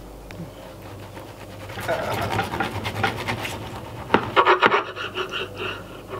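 Bread and a bacon-and-egg filling being pushed and scraped across a wooden chopping board, a rasping rub from about two seconds in and again briefly around four seconds.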